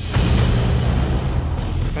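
Pickup truck speeding along a gravel road: a sudden, loud rush of engine and tyre noise on gravel with a deep rumble underneath.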